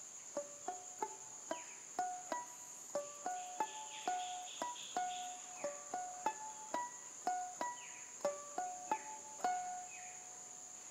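Banjo picked slowly in single notes, each ringing briefly before the next, about three a second in an unhurried melody. A steady high whine runs underneath.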